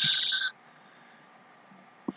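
A short hiss from the narrator's voice, with a faint whistle in it, fading out about half a second in, then near silence.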